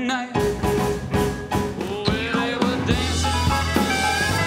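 A rock and roll song performed live: a male singer over a band with a drum kit keeping a steady beat. The music breaks off for a moment just after the start and picks up again with another song.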